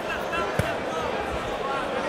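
Live boxing bout: one sharp impact about half a second in, with dull thuds of footwork on the ring canvas, over steady crowd voices and calls in the hall.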